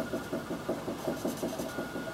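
Felt-tip marker colouring back and forth on paper on a wooden table, a fast, steady rhythm of about six strokes a second.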